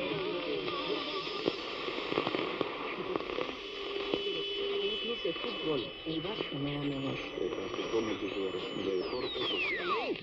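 Medium-wave AM reception from a portable radio's speaker: faint speech and music from distant stations mixed with static hiss and steady whistling tones. Near the end a whistle falls steeply from very high to low in pitch as the tuning dial moves.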